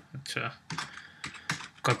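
Typing on a computer keyboard: a handful of separate keystrokes and short runs of keys, irregularly spaced.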